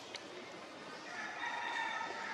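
A single long animal call at a steady pitch with several overtones, starting about halfway through and still going at the end, over a faint steady outdoor hiss.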